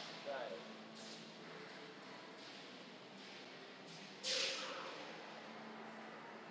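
Quiet room with faint, brief voices of people watching. A short breathy sound comes about four seconds in.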